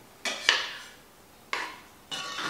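A metal spoon knocking against a cast-iron Dutch oven while stirring a thick beef stew: three sharp clinks with a short ring, the second the loudest.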